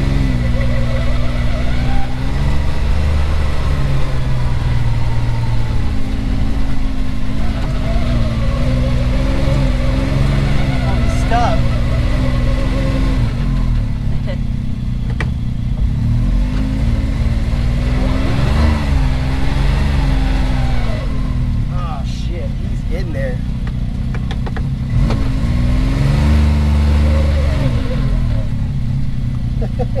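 Can-Am Maverick X3 side-by-side's turbocharged three-cylinder engine heard from on board, its revs rising and falling as the throttle is worked over a rough, muddy trail.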